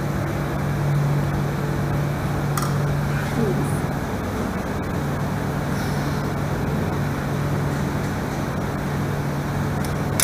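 Steady low machine hum, with a few faint clinks of a serving spoon against steel buffet dishes.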